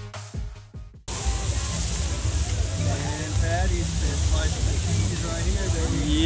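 Electronic music cuts off abruptly about a second in. After it, burger patties sizzle on a hot flat-top griddle, a steady hiss with a low rumble beneath and voices in the background.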